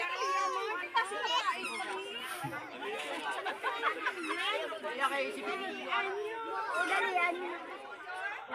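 Chatter of a group of people: several voices talking over one another.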